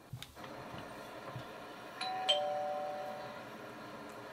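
Two-note ding-dong doorbell chime about two seconds in: a higher note, then a lower one, fading out over about a second.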